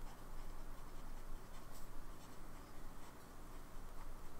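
Lamy Safari fountain pen's steel nib scratching softly across paper as words are handwritten, in short irregular strokes.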